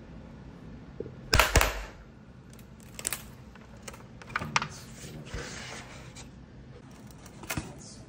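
Sharp clicks and cracks from a plastic drone propeller blade being bent down under load. The loudest cluster comes about one and a half seconds in, with smaller single clicks through the rest.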